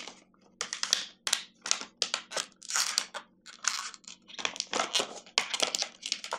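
Plastic blister packaging of a two-pack of Glade plug-in refills crackling and crinkling as it is pried open by hand, in a dense run of irregular sharp crackles.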